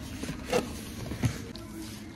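A cardboard shoebox being handled against a plastic bag while packing, with two short knocks, one about half a second in and one a little past a second.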